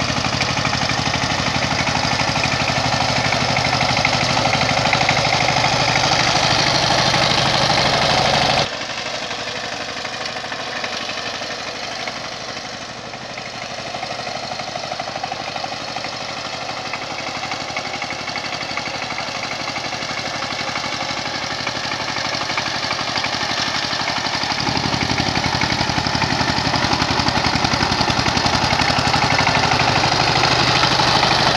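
Single-cylinder diesel engine of a two-wheel power tiller running steadily under load as it ploughs through waterlogged paddy mud. The sound drops suddenly about nine seconds in and stays fainter until the deep engine note returns in the last few seconds, growing louder toward the end.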